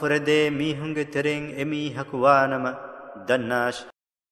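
A man chanting a Quranic verse in Arabic in melodic recitation, holding long, ornamented notes between short breaths. The voice stops just before the end.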